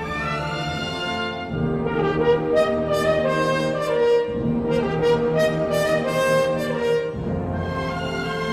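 Slow orchestral music with brass holding sustained chords that change every two to three seconds.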